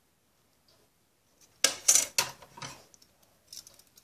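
Craft scissors being picked up and handled: a quick cluster of sharp clicks and clacks about a second and a half in, then a few faint ticks near the end.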